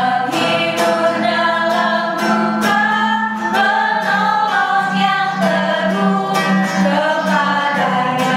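Women singing a Christian worship song in Indonesian, accompanied by a strummed acoustic guitar.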